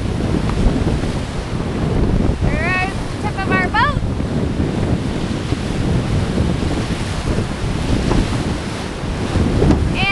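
Whitewater of a river rapid rushing loudly around a drift boat as it runs through, with wind buffeting the microphone. A couple of short, high, sliding calls cut through the rush about three seconds in.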